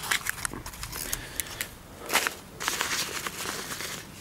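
Handling noise and footsteps on grass: a quick series of sharp clicks as the red test lead and wire reel are handled, a louder rustle about two seconds in, then steps through the grass.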